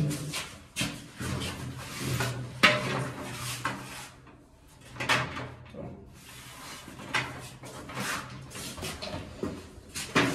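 Rubber glazing gasket being pressed into the channel of a glass door's frame, with a string of short, irregular knocks and scrapes of the frame and glass panel.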